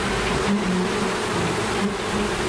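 A swarm of bees buzzing steadily in a dense hum.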